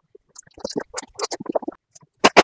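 Close-miked eating sounds, sped up: a quick run of biting and chewing noises that starts about half a second in.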